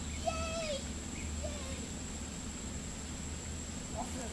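A short high-pitched vocal sound near the start that falls in pitch at its end, then a faint outdoor background with a thin steady high-pitched whine and a low rumble.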